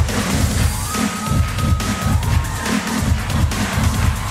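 Electronic dance backing track with a heavy, repeating bass beat, played loud for a body-popping routine, with a studio audience cheering over it.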